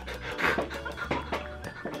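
Breathy laughter in short bursts, about two a second, over background music.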